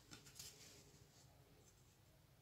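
Near silence, with a few faint brief scrapes and taps in the first half second as hands handle a serving plate on a cloth.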